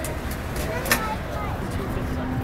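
Busy city street ambience: a steady low traffic rumble with faint voices of people around, and one short sharp click about a second in.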